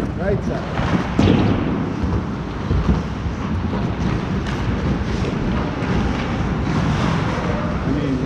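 Steady rush of wind noise on a player-worn camera's microphone while skating on an ice rink, with a few knocks from play on the ice.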